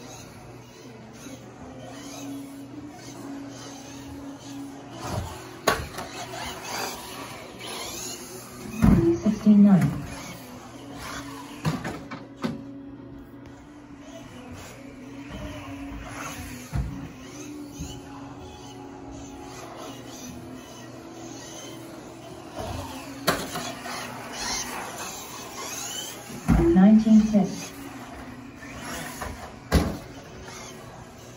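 Electric 1/10 4WD off-road buggy lapping an indoor carpet track, its motor whine rising and falling with the throttle, over steady background music. A short voice call cuts in about nine seconds in and again near the end.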